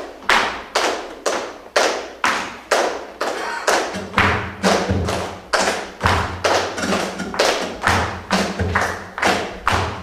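Flamenco shoes striking a wooden stage floor in steady footwork, sharp heel strikes at about two to three a second. From about four seconds in, low notes from the accompanying band join the stamping.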